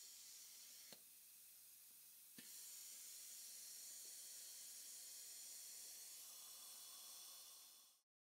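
Near silence with a very faint steady hiss of dental high-volume evacuation suction, a little louder after a small click about two and a half seconds in, fading out near the end.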